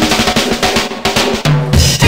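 Breakbeat drum pattern played from a sampler, with kick and snare hits in quick succession. A low bass note comes in near the end.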